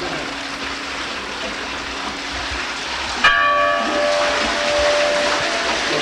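A church bell struck once about three seconds in, ringing on with several clear tones that die away slowly, over a steady hiss.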